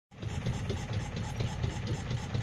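Small wooden boat's motor running steadily under way: a low, evenly pulsing drone with a hiss above it.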